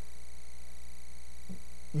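Steady electrical mains hum with its evenly spaced overtones, unchanging throughout.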